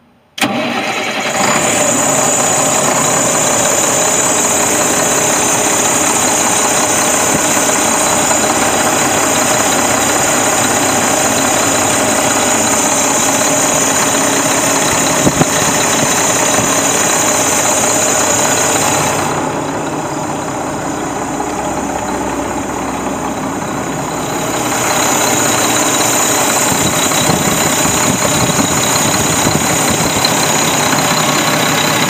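A remanufactured Mack E7-300 six-cylinder diesel engine in a 2002 Mack RD690S dump truck starts about half a second in and then runs steadily at idle.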